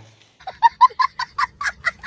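A rapid run of about nine short, high-pitched clucking calls, about five a second, like a bird clucking.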